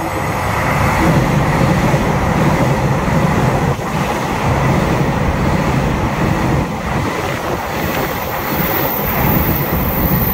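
Taiwan Railway EMU3000 electric multiple unit passing through an underground station at high speed: a loud, sustained rumble of wheels on rail and rushing air that builds as the train reaches the platform about a second in, then holds steady as the carriages pass close by. A thin high-pitched whine joins in near the end.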